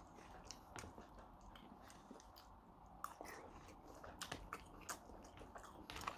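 Faint close-up chewing of food, with scattered small crunchy clicks, a sharper one about three seconds in.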